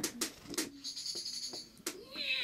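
A handful of sharp, unevenly spaced clicks or taps, about five in two seconds, with a faint high-pitched tone in the middle.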